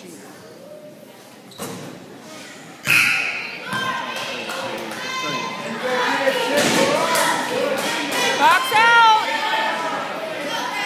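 Basketball game in a reverberant gym: a few sharp thuds of the ball and players, the loudest about three seconds in, then spectators shouting and calling out over the play, with one drawn-out rising-and-falling cry near the end.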